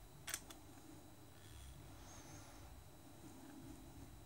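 Near silence: faint room tone, broken about a third of a second in by one sharp click, with a fainter second click just after it.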